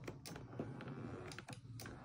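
Faint, irregular plastic clicks from the side switch panel of a BMW F01/F10 comfort seat as its adjustment switches are pressed and rocked.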